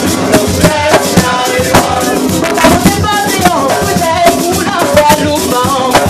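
Live band music: a woman singing into a microphone with a saxophone, over hand drums and a shaker rattle.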